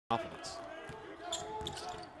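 Basketball dribbled on a hardwood court, several bounces, with faint voices in the background.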